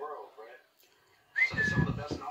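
A single short human whistle about one and a half seconds in: a quick upward flick that settles on a held note for about half a second, over a louder low muffled sound. Faint muffled voices sound just before it.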